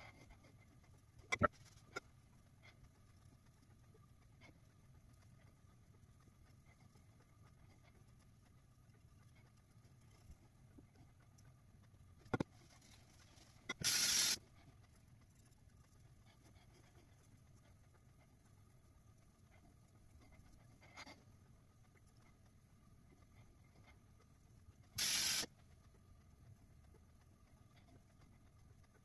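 Water splashed at a bathroom sink to rinse shaving lather off the face: two short bursts of splashing, each about half a second, one about fourteen seconds in and one near twenty-five seconds, over a quiet room with a few faint clicks.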